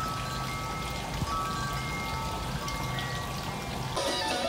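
Wind chime ringing a few scattered, sustained notes over a steady hiss of water trickling from a kiddie pool as it is emptied.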